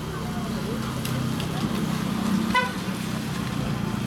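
A vehicle horn gives one short toot about two and a half seconds in, over a steady low engine hum and street background.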